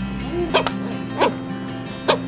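Corgi puppy giving two short, high-pitched yips, about half a second and just over a second in, over background music.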